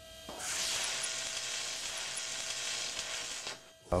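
A logo-intro sound effect: a hissing swell with a faint steady tone underneath. It rises about a third of a second in, holds, and fades out just before the end.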